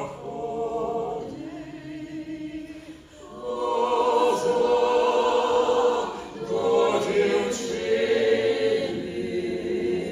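Mixed men's and women's folk choir singing a Ukrainian folk song in harmony. A quieter passage gives way, about three and a half seconds in, to the full ensemble singing louder.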